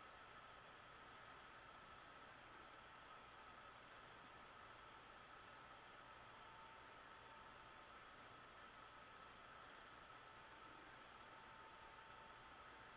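Near silence: steady room-tone hiss with a faint steady high whine.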